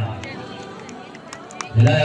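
A man's voice announcing over a public-address system: a pause with faint outdoor crowd background, then the announcement resumes loudly near the end.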